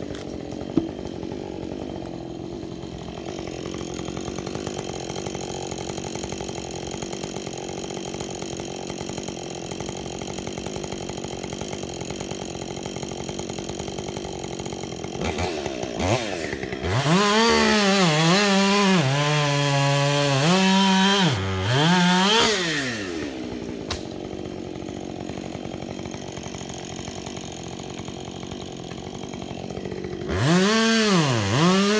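Two-stroke chainsaw idling steadily. About halfway through it is revved up high and held there for about six seconds, its pitch sagging and climbing again, before dropping back to idle. A short click is heard about a second in.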